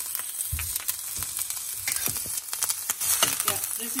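Pounded ginger frying in olive oil in a stainless steel skillet: a steady sizzle with fine crackling, as a utensil stirs and scrapes it around the pan. A low knock comes about half a second in.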